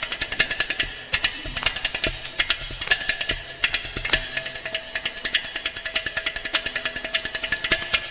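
Carnatic percussion playing fast, dense rhythmic strokes, several a second, from mridangam, ghatam and morsing, over a few sustained steady tones.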